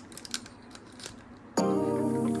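Faint small clicks and rustles as a thin packaging string is worked off a plastic transforming dinosaur toy figure. About one and a half seconds in, a sustained musical chord comes in and is the loudest sound.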